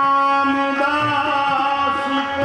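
Sikh shabad kirtan: ragis singing a long, drawn-out line over sustained accompaniment, with only light tabla strokes.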